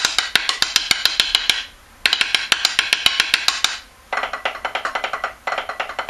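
Snare drum played with sticks in runs of rapid, crisp strokes, the first measure of a 3/4 backsticking passage played through several times with short pauses between runs.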